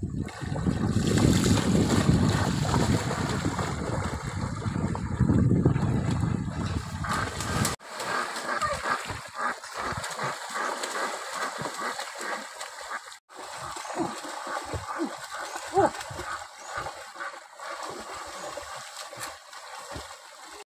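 Water splashing and sloshing as people wade and swim through a shallow river, many irregular splashes. A heavy low rumble fills the first eight seconds and cuts off abruptly, with another sudden break a few seconds later.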